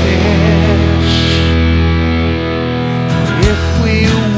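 Rock music: a distorted electric guitar holds a chord that fades out, and a new chord is struck about three seconds in. A wavering voice sings at the start and comes back near the end.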